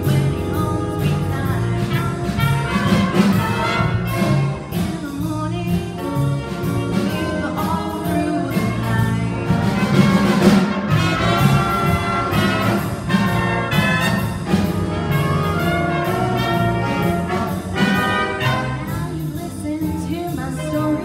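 A band playing a piece, with brass instruments to the fore and a steady beat.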